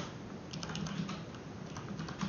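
Typing on a computer keyboard: short runs of quick keystrokes, the first about half a second in and a few more near the end.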